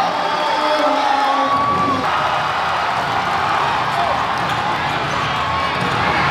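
Basketball arena crowd during a game: a steady din of many voices cheering and shouting, with a few drawn-out shouts in the first two seconds.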